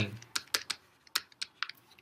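Stylus tapping and clicking on a hard tablet surface while a word is handwritten: about ten sharp, irregular ticks.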